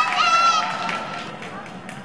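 High-pitched voices calling out from the stands, fading away after the first half-second or so, over low steady rink noise.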